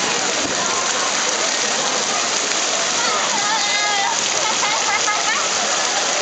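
Steady hiss of water spraying and pouring from lazy-river spray pipes and splashing onto the water. Distant voices call out about halfway through.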